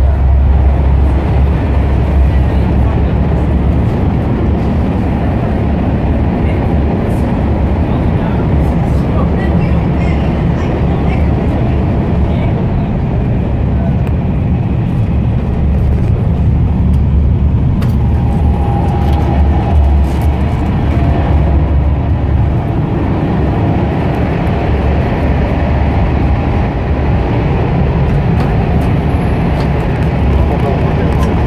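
Thalys high-speed train running at speed, heard from inside the carriage: a loud, steady low rumble.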